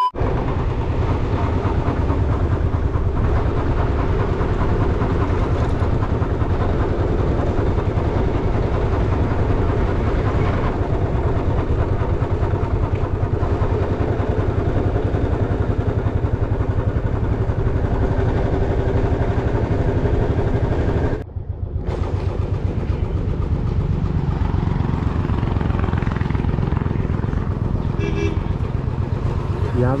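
Motorcycle engine running steadily at road speed, with wind rushing over the microphone. The sound cuts out briefly about 21 seconds in, then resumes.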